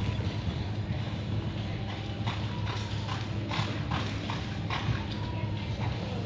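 Horse galloping on soft arena dirt during a barrel-racing run, its hoofbeats coming as a series of irregular thuds over a steady low hum.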